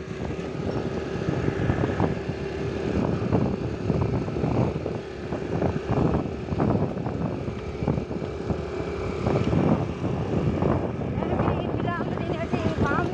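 Wind buffeting the microphone over the running of a vehicle on the move, its loudness rising and falling unevenly.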